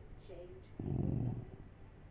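West Highland Terrier giving one short, low, rough growl about a second in. It is a playful "talking" growl, given on request as a hello.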